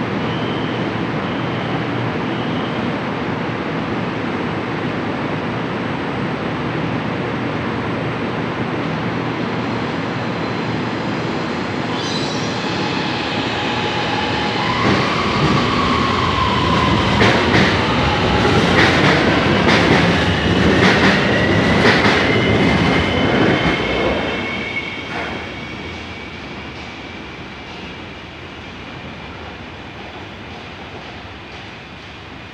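CSR Zhuzhou 'AMY' light-rail train departing. It first stands with a steady hum and a short run of beeps at the start. About twelve seconds in it pulls away, with a rising whine from the drive and loud clacking and squealing from the wheels on the track, which fades out over the last few seconds.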